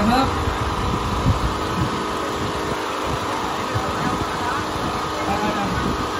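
A steady mechanical hum with several pitches held throughout, under scattered voices of a crowd in the street.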